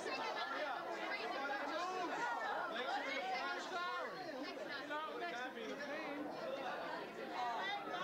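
Chatter of a group of adults talking over one another, many voices overlapping without a break.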